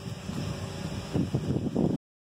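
Wind buffeting the microphone: an uneven low rumble that gusts harder in the second half, then cuts off abruptly.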